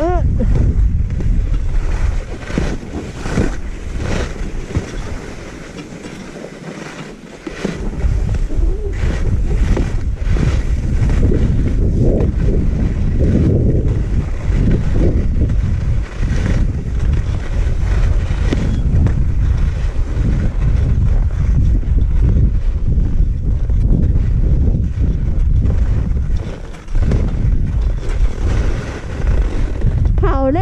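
Wind buffeting the helmet-mounted GoPro's microphone during a downhill ski run, a loud low rumble mixed with the hiss and scrape of skis on snow. It eases for a couple of seconds about six seconds in.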